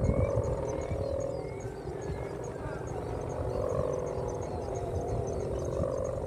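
Buzzing drone of kite hummers (sendaren) on large flying kites: a wavering tone that swells and fades with the wind. Low wind rumble runs underneath.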